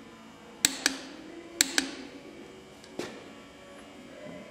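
Torque wrench clicking as a cylinder head bolt is tightened to 75 pounds of torque: two pairs of sharp clicks about a second apart, then a single click about three seconds in.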